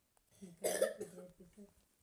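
A person's cough, a single short burst about half a second in, trailing off into a faint voiced throat sound.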